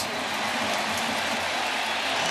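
Baseball stadium crowd cheering and applauding steadily after a two-run double.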